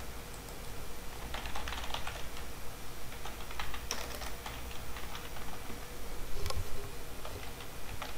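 Computer keyboard being typed on in quick, irregular keystrokes.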